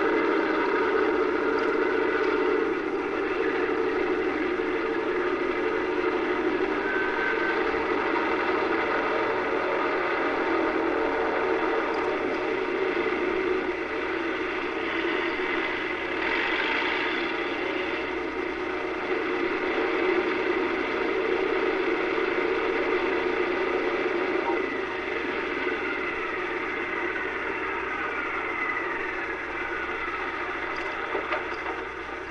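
B-17 bombers' radial piston engines running as the planes taxi: a steady, continuous drone. In the last few seconds several pitches slide downward. The sound is a TV soundtrack picked up by a webcam microphone off the screen.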